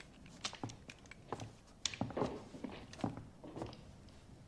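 Quiet, scattered movement sounds: light footsteps and handling knocks and clicks on a wooden floor, irregular and a few at a time.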